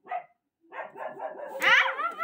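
A dog barking in short bursts, with the loudest, rising yelp about one and a half seconds in.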